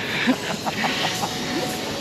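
Steady hum and hiss of a large supermarket hall, with a few short faint voice fragments in the first second and a half.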